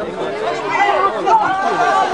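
Chatter of several spectators' voices talking over one another, with one voice holding a longer called-out note in the second half.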